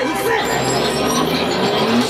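Game sound from a Saint Seiya Kaiou Kakusei pachislot machine while its add-on counter climbs: a rising electronic sweep with a voice over it.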